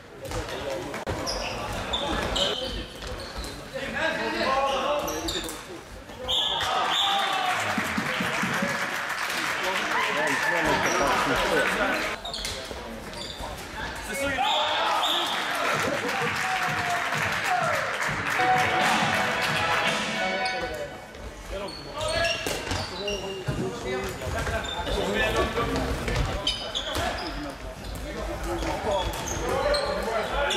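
Floorball game sound in a sports hall: players shouting to one another over the knock of sticks and the plastic ball, all echoing in the hall.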